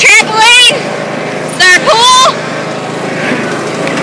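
Riding lawnmower engine running steadily underneath two loud, high-pitched vocal squeals, one at the start and another about two seconds in.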